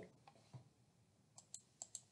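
Near silence, then a handful of faint, quick computer clicks in the second half: someone working the computer to move to the next slide.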